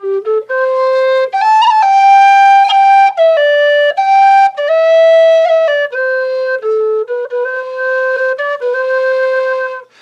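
Humphrey low G whistle playing a slow melody of long held notes. The tune is in the key of C and dips below the tonic C, down to the whistle's bottom G.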